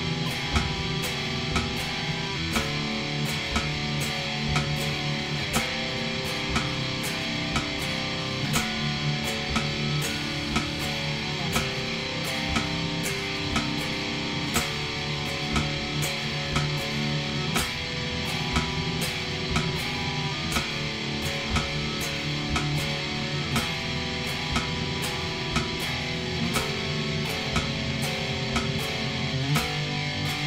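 Electric guitar playing a steady chord riff along with a metronome clicking at 60 beats per minute.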